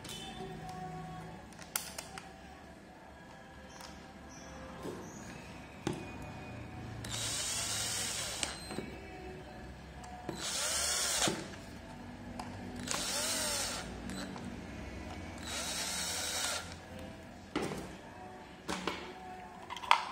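Cordless drill-driver with a screwdriver bit driving screws into a multimeter's plastic back case, running in four short bursts of about a second each, a few seconds apart. Light clicks of the plastic case being handled come before the first burst.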